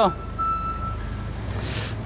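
Low, steady rumble of a car running, heard from inside the cabin, with a thin steady high tone that stops about a second in and a brief hiss near the end.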